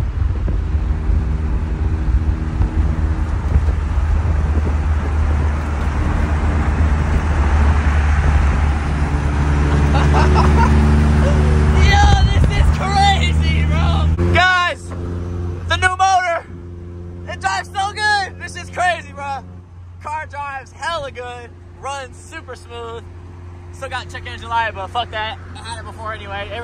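A car engine running with a loud steady low hum and rising road or wind noise, which drops away sharply about fourteen seconds in, leaving a quieter steady hum. Voices call out over it in the second half.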